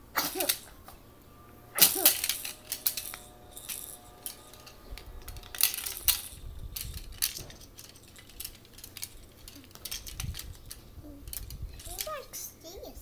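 Puzzle pieces clicking and clattering as a toddler picks them up and drops them on a floor puzzle, in irregular bursts, loudest about two seconds in.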